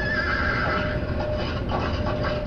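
A horse neighing once, a wavering high call lasting about a second, over a steady low rumble.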